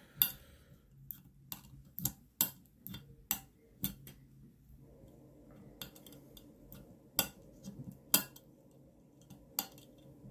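Small magnets clicking as they snap into the pockets of a fidget slider's metal plates: about a dozen sharp, irregular metallic clicks, a few of them louder.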